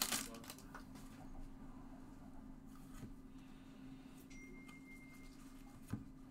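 Faint handling of a stack of chrome baseball cards: soft sliding with a few light clicks as the cards are shifted in the hands, over a low steady hum.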